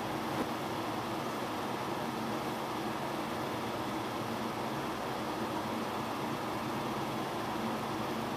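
Electric fan running, a steady even whir with no breaks.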